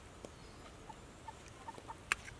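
Faint background of small birds chirping: a few short, quiet chirps about a second in and near the end, with a faint click early on.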